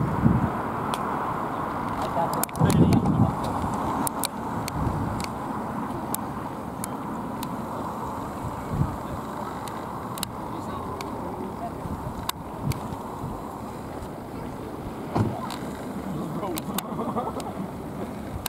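Steady low outdoor rumble with stronger surges about three seconds in, scattered sharp clicks, and indistinct voices near the end.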